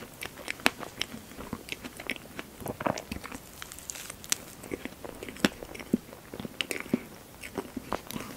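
Close-miked chewing of soft strawberry sponge cake with whipped cream: irregular wet mouth clicks and smacks, with another forkful taken into the mouth midway.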